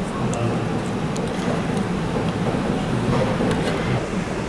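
Steady rushing background noise with faint, indistinct voices and a few light ticks.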